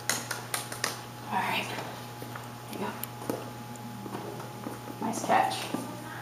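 Faint, indistinct voices in a reverberant room over a steady low hum, with a quick run of sharp taps in the first second.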